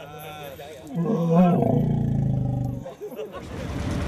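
A working Asian elephant gives one long, low call lasting nearly two seconds, starting about a second in, with faint human voices around it.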